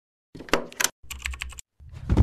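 Computer keyboard typing, quick key clicks in two short bursts, as an intro sound effect; a low rumble starts just before the end.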